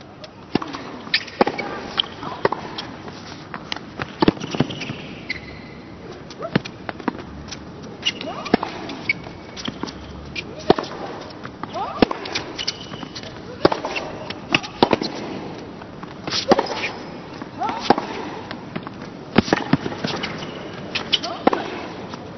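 A long tennis rally on a hard court: sharp racket strikes on the ball and ball bounces, a hit every half-second to a second, with short vocal grunts from the players on some shots.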